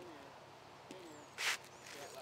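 Quiet outdoor ambience with faint bird calls and one short, sharp hiss about one and a half seconds in.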